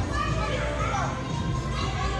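Indistinct children's voices and chatter over background music.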